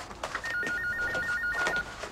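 Telephone ringing with an electronic trill: one burst of a tone flipping rapidly between two close pitches, starting just after the beginning and stopping shortly before the end.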